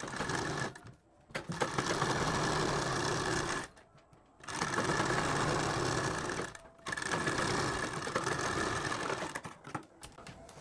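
Sewing machine stitching a seam to close the open top edge of a sleeve. It runs in four stretches with brief stops between them.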